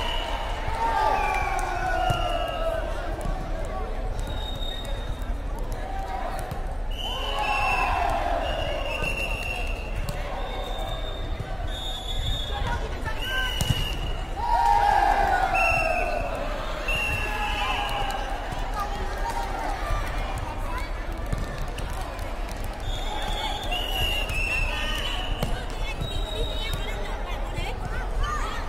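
Women's air volleyball rally: players' high-pitched voices calling out in short shouts again and again, with the light ball being struck now and then.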